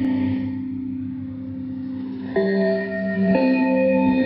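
Bell-like music received from Radio Thailand over shortwave AM on 9385 kHz. Sustained ringing notes are held, with new notes struck about two and a half seconds in and again just over three seconds in.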